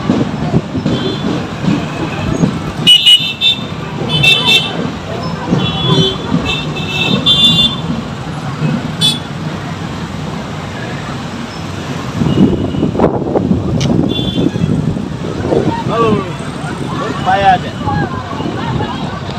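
Vehicle horns beeping in several short blasts in the first half of the clip, with another near the middle. They sound over crowd voices and the noise of motorbikes and traffic moving slowly along a street.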